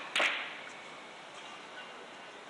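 A sharp crack near the start with a brief ring after it, following a slightly weaker one just before it.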